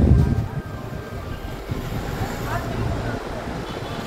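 Low rumbling handling and wind noise on a handheld phone microphone, with a loud thump right at the start and faint voices in the background.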